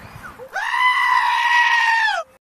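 A goat screaming: one long, loud, steady cry that starts about half a second in and dips slightly in pitch as it ends.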